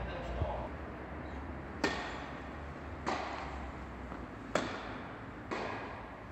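Tennis rally: rackets striking tennis balls with sharp pocks, five in all, spaced roughly a second apart, each ringing briefly in the large indoor hall.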